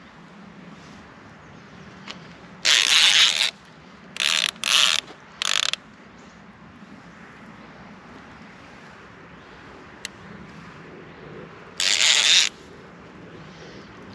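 Baitcasting reel's drag ratcheting out line in short bursts as a hooked wels catfish pulls against the bent rod: one burst of about a second, three quick short ones, then another near the end.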